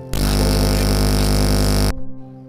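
A loud burst of harsh, static-like noise lasting nearly two seconds, cutting in and out suddenly, over a soft sustained keyboard chord.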